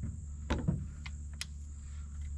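Guns being handled on a pickup's bed: a knock about half a second in and a light click a second later as the shotgun is lifted. A steady high insect drone runs underneath.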